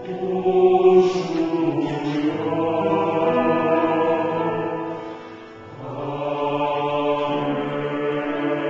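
Choir singing a slow sacred anthem in long held chords, fading briefly about five seconds in and then swelling again.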